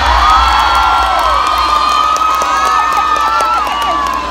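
A group of children cheering and shouting, many high voices overlapping in long rising and falling calls.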